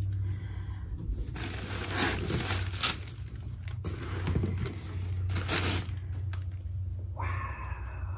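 Cotton dust bag rustling and swishing in several bursts as it is pulled off a leather handbag, with a brief sharp click partway through and a low steady hum underneath.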